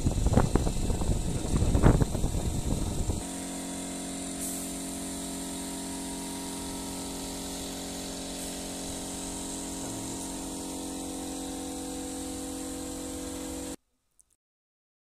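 Loud, rough construction-site noise with a few sharp knocks for about three seconds, then an abrupt change to a steady motor hum that holds one unchanging pitch until the sound cuts out just before the end.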